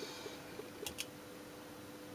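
Two faint clicks in quick succession about a second in, as a power plug is pushed into the socket on an electronics kit board, over a faint steady hum.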